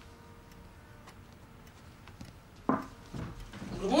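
Quiet room tone with faint, light ticks about every half second. A sudden sharp knock-like sound comes about two and a half seconds in, and a short spoken word follows near the end.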